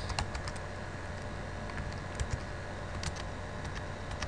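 Computer keyboard keystrokes: a quick cluster of clicks at the start, then a few scattered single keypresses later on, over a steady low hum.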